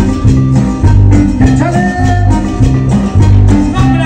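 Latin dance music played live by a band, with a heavy, repeating bass line, a steady beat and a sustained melody line above it.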